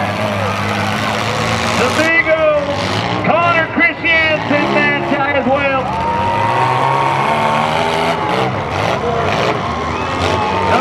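Demolition derby car engines running as the cars drive into a dirt arena, a steady low rumble under a voice.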